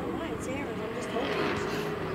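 Indistinct voices at a distance over a steady low drone.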